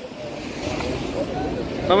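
Low wind noise buffeting a phone microphone outdoors, with a steady wash of surf beneath it and faint voices in the background. A man starts talking right at the end.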